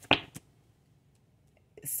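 A deck of tarot cards snapping in the hands as it is shuffled: one sharp click, then a fainter second one a quarter second later.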